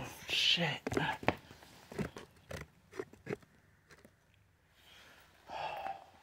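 Handling noise as the camera is moved and set down low: a series of sharp knocks and clicks, after a brief murmured voice at the start and before a breathy rush near the end.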